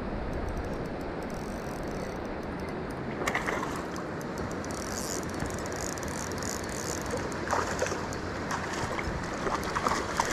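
Steady rushing of creek water below a dam, with a few brief sharper sounds over it, the last near the end as a hooked rainbow trout splashes at the surface.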